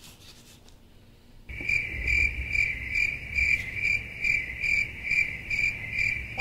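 Crickets chirping in an even, steady rhythm of about two to three chirps a second. The chirping cuts in abruptly about a second and a half in, after a quiet pause.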